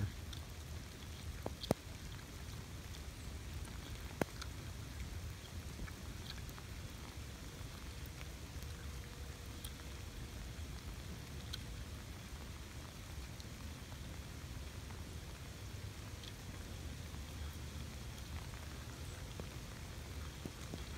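Steady rain falling, with a few sharp ticks about two and four seconds in and scattered smaller ones.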